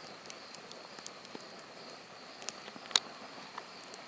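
Small wood campfire burning, with scattered sharp crackles and pops; the loudest pop comes about three seconds in. Under it runs a steady, faint, high drone of insects.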